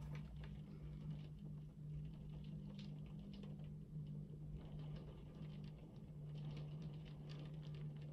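Faint rain pattering, scattered small drops, over a steady low hum.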